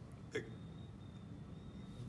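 Low room tone broken about a third of a second in by one brief throaty catch of breath, a hiccup-like click, from a man in a pause between words.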